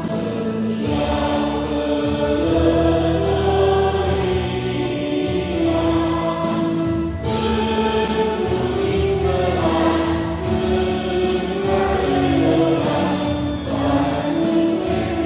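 A choir singing a slow Christmas hymn in long held notes, with a steady low accompaniment underneath.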